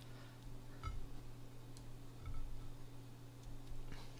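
Quiet room with a steady low hum, and a few faint soft taps as hands lay tomato slices onto sandwich buns on a plate.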